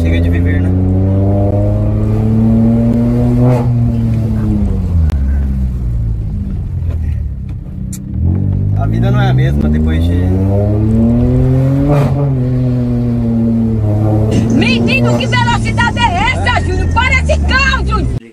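Car engine accelerating hard, heard from inside the cabin. Its pitch climbs and falls back twice, with a dip in the middle. A high, wavering voice cries out about nine seconds in and again over the last few seconds.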